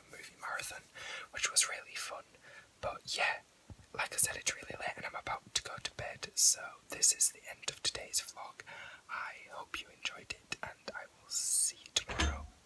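A young man whispering close to the microphone, a steady stream of breathy, hissing words.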